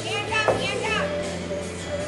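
High-pitched children's voices calling out over background music, with one sharp hit about half a second in.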